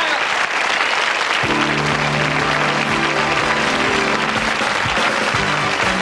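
Studio audience applauding. About a second and a half in, the show's closing theme music comes in under the applause with held low notes.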